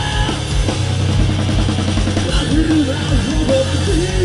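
Live heavy rock band playing loud: drum kit with a steady beat, bass and guitars, with a wavering pitched line over the top.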